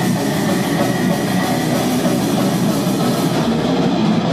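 Live heavy rock band playing loud and steady: electric guitars, bass guitar and drum kit.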